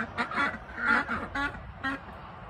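Domestic ducks quacking, a run of about five short quacks.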